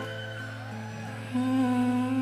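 Live concert music in a slow, quiet passage: held notes with a soft voice gliding over them. A stronger low note comes in a little past halfway and the music grows louder.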